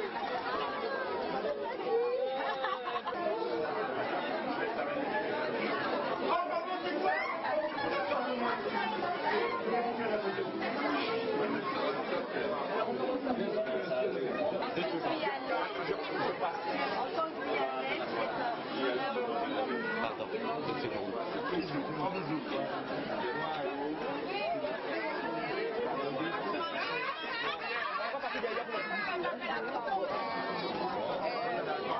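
A crowd of many people talking at once: steady overlapping chatter in which no single voice stands out.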